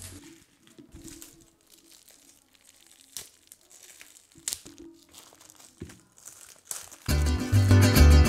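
Faint, scattered crinkling and crackling of plastic wrap as it is peeled off a block of modelling clay. About seven seconds in, louder guitar background music starts with a steady beat.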